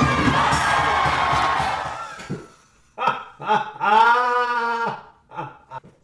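Swing music and a crowd cheering, fading out about two seconds in. Then a man's wordless vocal reactions, including one long drawn-out exclamation.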